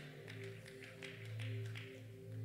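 Quiet background keyboard music: low sustained notes held under the pause, swelling in level about midway.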